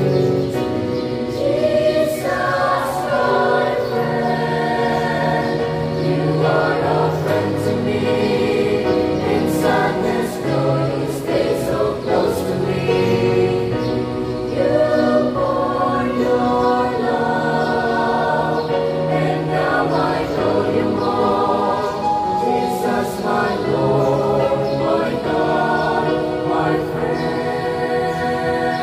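Small mixed choir of young men and women singing a slow Christian communion hymn, holding long sung notes together.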